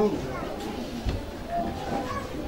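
Faint, indistinct talk over a steady low room noise, with a single low thump about a second in.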